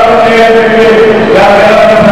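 A voice chanting in long held notes, stepping to a new pitch about a second and a half in.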